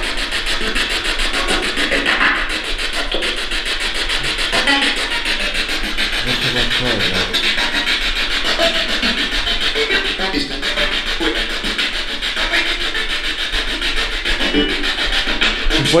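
Spirit box sweeping through radio stations: a steady rush of static, rapidly chopped, with brief snatches of voices and music breaking through.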